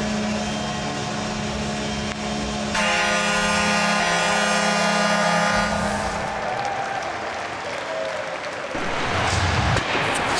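Arena goal horn sounding for about three seconds over crowd noise, signalling a goal just scored; the crowd noise then fades.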